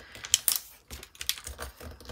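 Sheet of tracing paper being folded and creased by hand around a cardstock template: irregular crisp crackles and light taps of the stiff paper against the card and table, the sharpest about a third of a second in.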